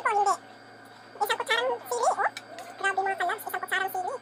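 High-pitched voice sounds in three short runs, near the start, in the middle and near the end, gliding up and down in pitch.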